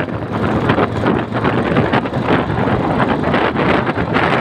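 Wind buffeting the microphone over a motorcycle's running engine as it picks up speed from about 30 to 40 km/h on the open road.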